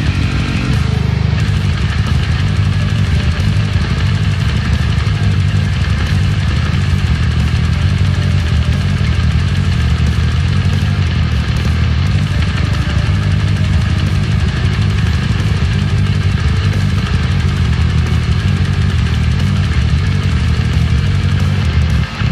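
Loud death metal bass part on a Dingwall NG3 six-string electric bass played through a Darkglass Adam preamp, a thick, unbroken low line with no pause.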